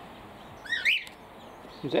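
A bird chirping: a quick run of two or three short, rising-and-falling chirps about a second in.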